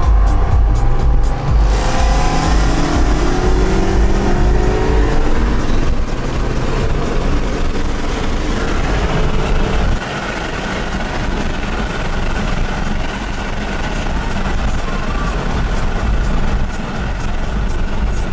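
Sports car engine heard from inside the cabin, accelerating hard with its pitch rising over several seconds. About halfway it gives way to a steadier, slightly quieter drone of engine and road noise at cruising speed.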